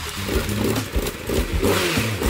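Motorcycle engine running, its low note rising and falling unevenly, with a broad hiss over it.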